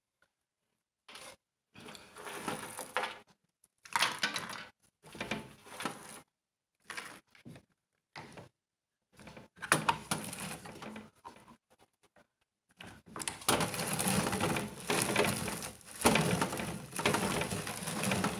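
Hand-cranked rotary drum grater grinding walnuts and dried dates, the nuts crunching and rasping against the steel cutting drum. It comes in short bursts of cranking with pauses, then runs almost without a break over the last few seconds.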